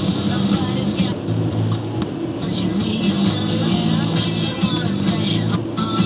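Music playing from a car's stereo inside a moving car, with bass notes over steady road and engine noise.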